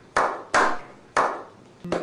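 One person's slow hand claps: three sharp claps in the first second and a bit, each trailing off in a short echo.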